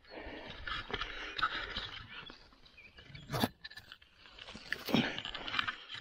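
Rustling and crunching of dry conifer needles and twigs on the forest floor as a mushroom is picked and handled by hand, with a sharp snap about three and a half seconds in.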